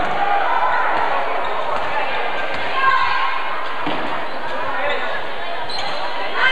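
Basketball dribbled on a hardwood gym floor, the bounces echoing in a large hall, over steady talk from spectators in the bleachers.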